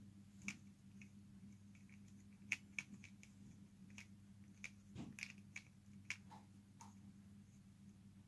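Plastic pyraminx puzzle being turned fast by hand: a dozen or so quiet, irregular clicks as its layers snap round. A faint low steady hum underneath.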